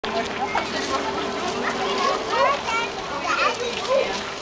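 Several children's voices chattering and calling over one another, no single voice clear.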